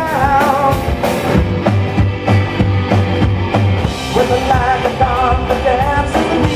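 Live amplified rock band with electric guitar, electric bass and drum kit, and a man singing into the microphone. He sings near the start and again over the last two seconds, with repeated low bass notes and drums carrying the middle.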